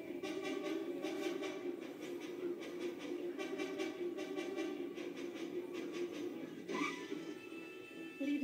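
Tense drama score playing through a television's speakers, with sustained tones over a steady pulsing beat; a brief sharp sound cuts through about seven seconds in.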